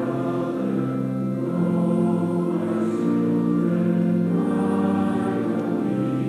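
A choir singing a slow hymn in held, sustained chords that change every second or two.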